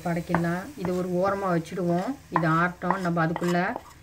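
A person's voice talking in short phrases, the loudest sound, over a wooden spatula stirring chopped onion and cumin frying in oil in a frying pan, with a faint sizzle.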